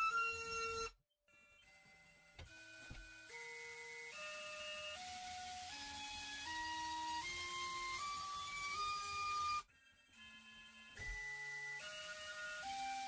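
Brushless drone motor (T-Motor F60 Pro III, 2500KV) spinning a 5-inch propeller on a thrust stand, its whine climbing in even steps as the throttle is raised stage by stage. It cuts off about ten seconds in, and a new run starts low and begins stepping up again.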